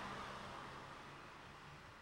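Chevrolet pickup truck driving away down the road, its tyre and engine noise fading steadily.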